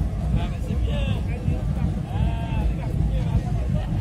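Loud street-carnival parade sound: a dense, pulsing low rumble of parade music, with voices calling out over it about a second in and again a little after two seconds.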